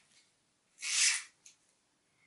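Cucumber scraping against the blade of a cheap handheld spiral vegetable cutter as it is twisted: one short scrape about a second in, then a brief light click. The cutter is not cutting properly.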